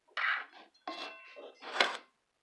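Table knife scraping and clinking across the rim of a flour-filled measuring cup to level it off, in a few short strokes. There is a brief ringing clink about a second in, and the loudest scrape comes near the end.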